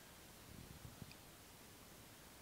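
Near silence: faint room tone, with a few soft low knocks and a tiny click about half a second to a second in.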